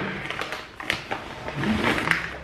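A parcel of cosmetics being handled and opened: rustling packaging with a few sharp clicks, the loudest about a second in.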